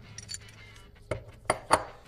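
Steel gear parts of a Ford 3-bolt auto-locking hub clinking against each other as they are handled. A few light clinks come near the start, then three sharper clinks follow in the second half, the last the loudest.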